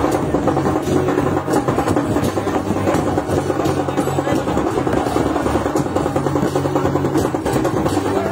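A group of large barrel drums (dhol) beaten together in a loud, dense, continuous rhythm.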